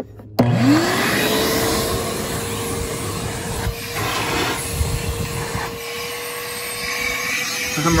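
Hart 16-gallon 6 peak HP wet/dry shop vac switched on about half a second in. Its motor spins up with a rising whine that levels off into a steady run over rushing air. The rush of air shifts a few times as the nozzle moves.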